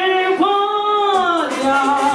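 A woman singing solo into a handheld microphone, holding long notes that bend and slide downward between short breaths.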